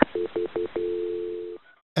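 Telephone dial tone on a recorded phone line: three quick beeps, then a steady tone for just under a second that cuts off, as the 911 dispatcher flashes the line to transfer the call.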